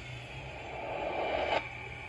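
Underwater rushing noise for a charging mako shark, building steadily louder and cutting off suddenly about one and a half seconds in, over a low steady hum.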